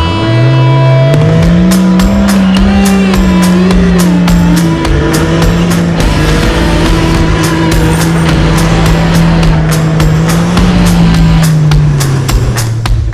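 A 4WD's engine revving hard under load, climbing in soft sand: the note rises sharply at the start, holds high with small wavers, and eases off near the end. Music with a steady beat plays over it.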